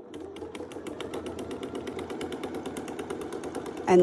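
Domestic sewing machine running steadily during free-motion quilting: a motor hum under a fast, even ticking of the needle stitching through freezer paper and batting.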